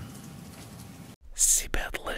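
Faint room tone, then an abrupt cut about a second in to a short whispered voice from an advert's voiceover.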